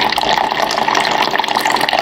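A thin, steady stream of water pouring from a SimPure countertop reverse osmosis filter's dispenser into a partly filled plastic measuring cup, splashing continuously. The filter's tank is being flushed out through the dispenser.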